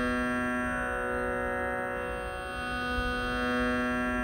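Tanpura-style drone: a held pitch with many overtones, swelling gently every second or two.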